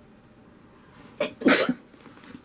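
A woman sneezing once, loudly, about a second and a half in.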